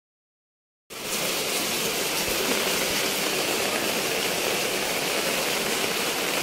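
Silence for about the first second, then steady rain falling on a tiled courtyard.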